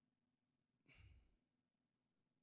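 Near silence, broken by one faint breath into a handheld microphone about a second in.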